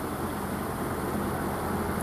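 Steady background noise: a low rumble with a faint hiss, unchanging throughout.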